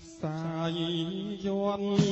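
A male voice singing one long held note in a Khmer song, coming in just after a brief dip at the start, the pitch bending slightly as it is sustained.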